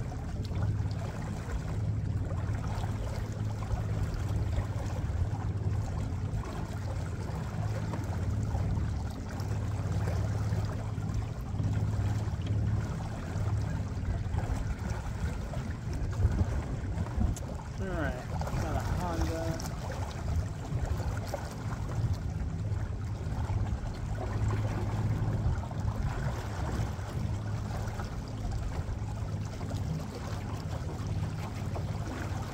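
Small boat motor running steadily at low speed as the boat moves along, a low even hum over the wash of water. A short, faint, wavering sound comes about eighteen seconds in.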